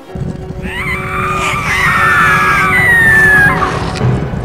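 A long, wavering scream that slowly falls in pitch for about three seconds and stops just before the end, over a low rumbling noise and music.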